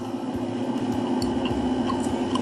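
Steady low background hum, with a few faint small clicks from eating fish by hand.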